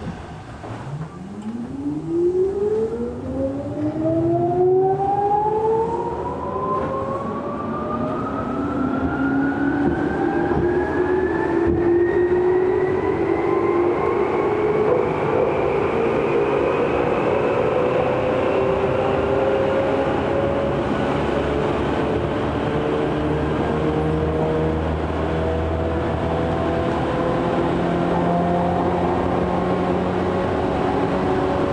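Tokyu 8500 series electric train accelerating away from a station, heard from inside the car: the traction motor whine rises steadily in pitch over about fifteen seconds and then levels off at running speed, over rumbling wheel and rail noise.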